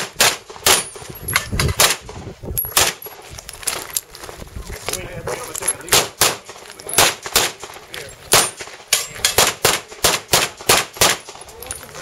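Pistol shots fired in quick pairs and short rapid strings, about two dozen in all, with a pause of over a second about three seconds in before the firing resumes.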